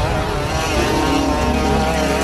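Boston Dynamics BigDog's small two-stroke petrol engine, which drives the robot's hydraulics, running with a steady buzz.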